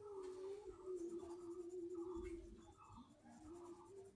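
Coloured pencil scratching on paper in short, repeated strokes, about two a second, over a faint steady hum.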